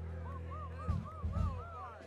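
Stage instruments sounding between songs: a low note held steadily, a string of about six short arched chirping tones above it, and two low thumps about a second in.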